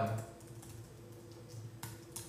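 Typing on a computer keyboard: a few soft keystrokes, with one sharper key click near the end.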